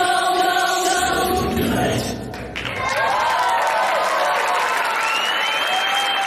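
Stage-show dance music ends on held notes about two seconds in, followed by an audience cheering, whistling and clapping.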